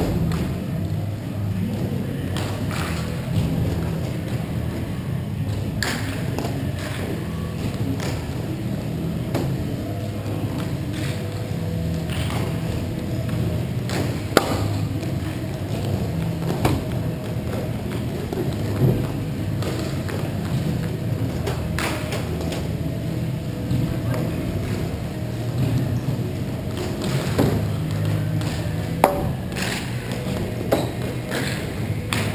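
Ice hockey game sounds in a rink: scattered sharp knocks of sticks, puck and boards, a dozen or so spread irregularly, over a steady low rumble.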